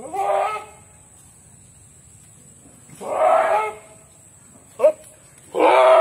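Billy goats bleating: a loud call at the start, another about three seconds in, a short one near five seconds and a longer one just before the end.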